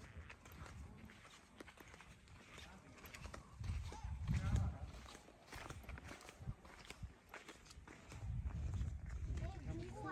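Footsteps on a paved trail as people walk, with faint voices in the background and low rumbling on the microphone twice.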